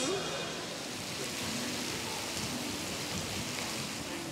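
Steady, even hiss of background ambience with faint distant voices.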